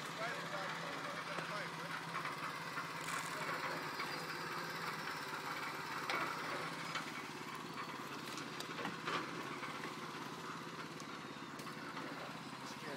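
Outdoor worksite background: indistinct distant voices talking over a steady low hum, with a few faint clicks.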